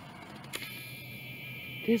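A video camera's zoom motor whining steadily as the lens zooms out, starting with a faint click about half a second in. A woman begins to speak near the end.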